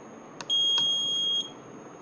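A push-button click, then the voting machine's buzzer giving one steady high-pitched beep lasting about a second.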